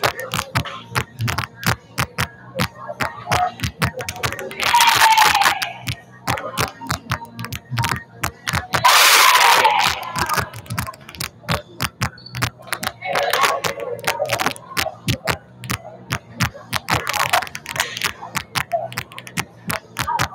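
Volleyballs being struck and bouncing on a gym floor in quick, irregular smacks during a warm-up, echoing in the hall. Players' shouts rise over them four times.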